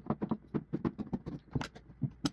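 Utility knife blade cutting through a plastic jug: a fast, irregular run of sharp clicks and crackles as the blade works through the plastic.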